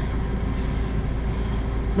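Steady low rumble of a car's engine and tyres heard from inside the cabin while it drives slowly.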